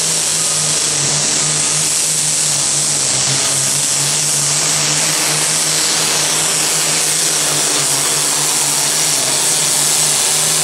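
Turbocharged diesel engine of an International Super Farm pulling tractor running at full throttle under heavy load during a pull, a loud, steady note held throughout.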